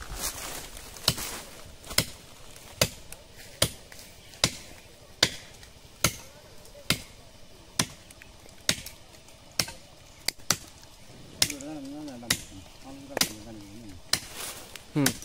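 A hand-held blade chopping into a standing tree trunk near its base, felling the tree: about fifteen sharp, even strokes, a little over one a second.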